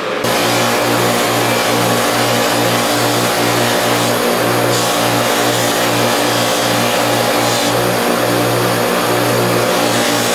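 Electric bench buffer running a new stitched cotton buffing wheel: the motor comes on abruptly just after the start and runs steadily with a low hum under a broad whirring hiss. A leather knife sheath is held against the spinning wheel, and the hiss shifts briefly a few times.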